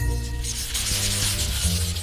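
A noisy hissing transition sound effect lasting about two seconds, over background music with a steady bass line.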